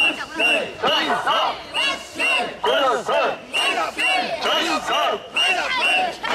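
A crowd of mikoshi bearers chanting "wasshoi" in unison as they carry the portable shrine, a steady beat of about two loud shouts a second.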